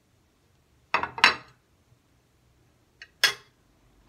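A white ceramic dinner plate with a metal fork on it clinks as it is handled and set down on a granite countertop: two sharp clinks about a second in, then a softer tap and a louder clink about three seconds in.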